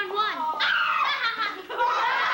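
A child's high-pitched, wordless whimpering and yelping with gliding pitch, like a puppy. The class starts laughing near the end.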